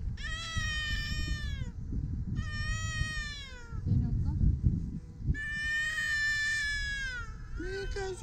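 A young child crying in three long wails, each holding its pitch and then falling away at the end, over wind rumbling on the microphone.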